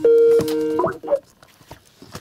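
Electronic call tone from a computer: two held notes joined by sliding pitch, cutting off about a second in. Faint scattered clicks follow in the room.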